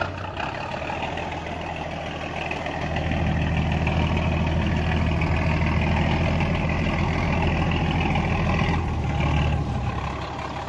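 Inboard diesel engine of a wooden ferry boat running at low speed while it comes alongside a pier. A steady low drone grows louder about three seconds in and eases off near the end.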